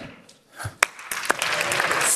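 Audience applause starting about a second in, after a brief lull, and building. A sharp click comes just before it, with a second, smaller one soon after.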